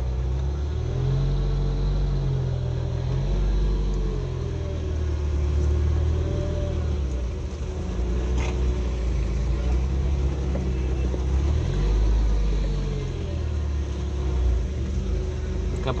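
Car engine and road noise heard from inside the cabin while driving slowly through town, the engine note rising and falling with the throttle. A sharp click about eight seconds in.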